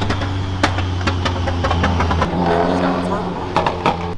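A lowered Subaru WRX sedan driving past, its engine giving a steady low drone, with a few sharp cracks during the pass.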